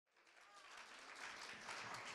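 Faint audience applause fading in about half a second in and slowly growing louder.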